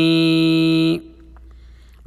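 A man's chanting voice holds the last syllable of a Sanskrit verse on one steady note for about a second, then stops sharply into a quiet pause.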